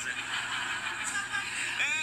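Studio audience laughing, with a woman's high-pitched laugh over it, heard through a TV's speaker; a man starts talking near the end.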